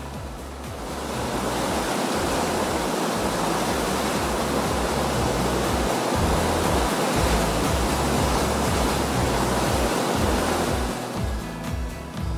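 Fukiware Falls rushing water, fading in about a second in and fading out near the end, over background music.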